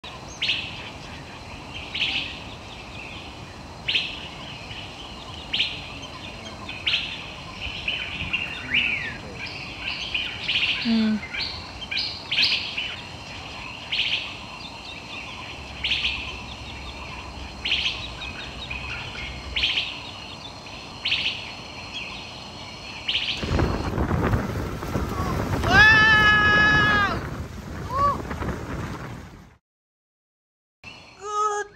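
Outdoor birdsong: a bird repeating a short call about every two seconds over a soft background hiss. Near the end a rush of louder noise comes in with one loud, drawn-out call, and then the sound cuts out.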